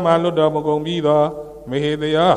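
A man's voice chanting in a steady, held intonation, with a short break about a second and a half in.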